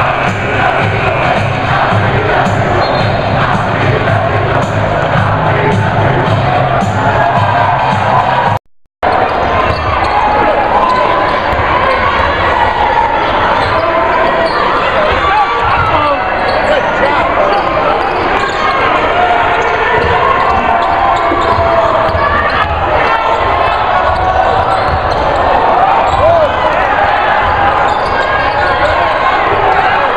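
Crowd cheering over a pep band for the first several seconds. Then, after a brief drop-out, live basketball game sound: a ball bouncing on a hardwood court amid steady crowd noise and voices.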